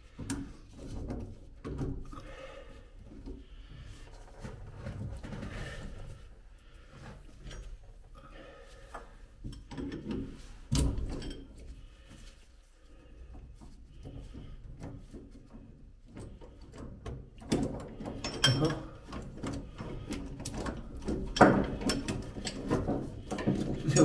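Metal clicks and clinks of a gear puller and hand tools being worked on a boat's propeller shaft coupling flange, pulling it off the shaft. One sharper knock comes about eleven seconds in, and the clinking grows busier and louder near the end.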